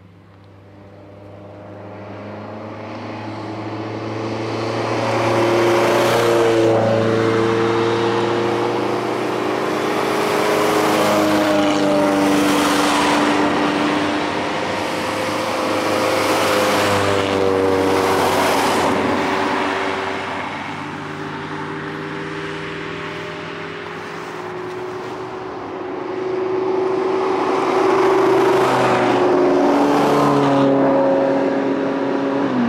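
Rally cars coming through a bend one after another, engines accelerating as each passes, with several swells in loudness. The last and one of the loudest passes, near the end, is a red Ferrari sports car.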